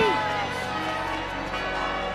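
Church bells pealing as wedding bells over the cartoon's background music, a dense mass of steady ringing tones.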